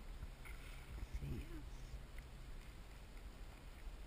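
Water lapping against a paddleboard hull as it is paddled through choppy water, over a steady low rumble, with a short vocal sound about a second in.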